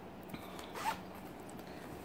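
Zipper of a fabric pencil case being pulled open: one brief, quiet zip about half a second in.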